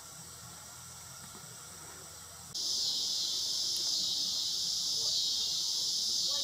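Faint, steady outdoor background at first. About two and a half seconds in, a louder, steady, high-pitched chorus of crickets starts and carries on.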